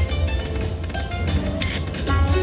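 Dragon Link slot machine playing its free-games bonus music, with short chiming notes as the reels spin, over a steady low hum.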